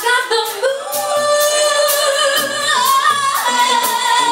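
A woman singing live into a handheld microphone, holding one long note that steps down slightly in pitch about three seconds in, over backing music with a light beat.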